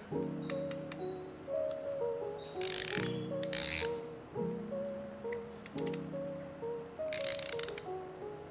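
Background music with a steady melody; over it, the click-ratchet adjustment ring of a 1Zpresso ZP6 hand coffee grinder turning in short bursts of rapid clicks, two pairs of them, a little before the middle and again near the end. The ring is being stepped toward zero while the grinder is calibrated.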